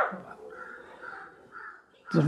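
Crows cawing faintly in the background: a few short, harsh calls.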